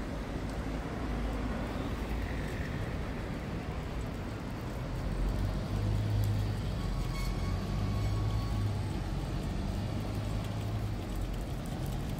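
City road traffic: cars and a bus running past in a steady low rumble, with a deeper engine hum from about six to eleven seconds in.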